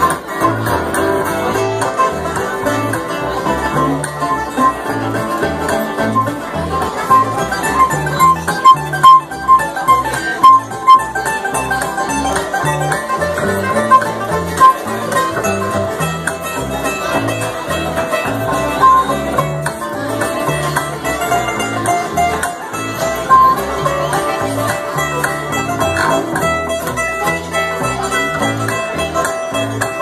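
A live bluegrass band of acoustic guitar, banjo, mandolin and upright bass playing an instrumental tune. A run of sharp, evenly spaced picked notes stands out between about seven and eleven seconds in.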